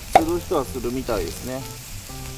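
Pickled napa cabbage sizzling as it fries in butter in a seasoned steel frying pan over a wood fire, a steady hiss under the talk. There is one sharp knock near the start.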